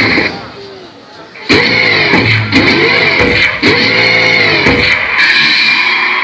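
Recorded dance-mix music over a loudspeaker system. It cuts out for about a second, then returns with a series of swelling pitched sounds, each rising and falling in pitch.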